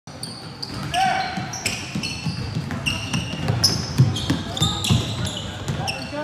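Basketball game on a hardwood gym floor: sneakers squeaking in short bursts, the ball bouncing, and voices calling out.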